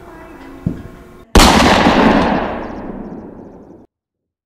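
A dull thump, then a brief dead silence, then a single sudden, very loud blast that dies away over about two and a half seconds before cutting off abruptly.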